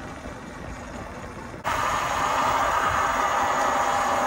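Steady riding noise from a Talaria Sting R electric dirt bike rolling along a concrete sidewalk. It is low and quiet at first, then jumps suddenly louder and brighter into a steady hiss about one and a half seconds in.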